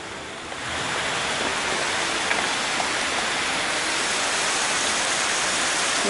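Chicken pieces sizzling in oil in a hot wok: a steady frying hiss that swells about half a second in and then holds.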